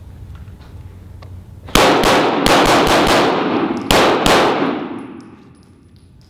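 Walther PDP pistol firing a quick string of about six shots, then two more after a short pause, each shot ringing on in the reverberation of an indoor range.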